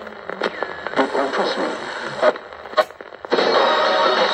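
A National 3-band portable transistor radio being tuned across its dial: snatches of broadcast speech and static change as stations pass, with a couple of sharp clicks. About three seconds in, a station playing music comes in suddenly and much louder.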